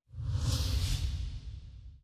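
Whoosh sound effect over a deep rumble for a TV news channel's closing logo ident: it swells in just after the start, is loudest in the first second and fades away toward the end.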